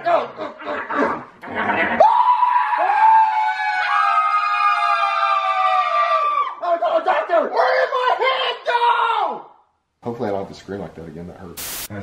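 Several people screaming together in high, held, overlapping voices for about four seconds, followed by more shrieking and laughing. Low talking follows a short break near the end, with one sharp click.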